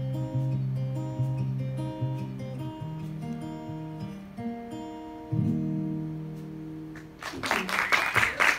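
Acoustic guitar played without singing as the song closes: picked notes, then a final chord about five seconds in that rings out and fades. Near the end, applause starts.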